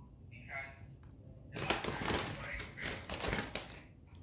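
Paper and plastic grocery bags rustling and crinkling as groceries are handled, a dense run of crackles starting about one and a half seconds in. A brief soft vocal sound comes just before.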